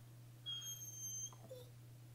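Dog whining: one thin, high-pitched whine lasting under a second, then a brief falling whimper.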